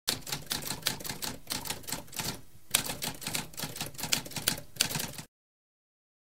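Typewriter keys striking in a rapid, uneven clatter, with a brief pause about two and a half seconds in. The typing cuts off suddenly after about five seconds.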